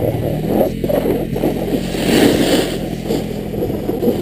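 Snowboard sliding over groomed snow, with wind rushing over the camera microphone; a brighter scraping hiss from the board's edge swells around the middle.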